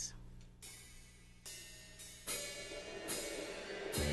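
Drum-kit cymbal struck four times at a slow, even tempo, about one stroke every 0.8 seconds, counting in a slow swing ballad.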